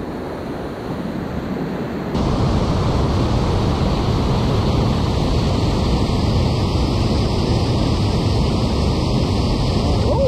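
Steady rushing roar of a whitewater rapid pouring over a steep drop. It jumps louder about two seconds in and then holds steady.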